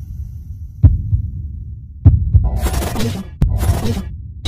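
Intro sound design: a deep pulsing bass rumble with heavy hits about one and two seconds in, then a loud hiss-like noise layered over it in the second half.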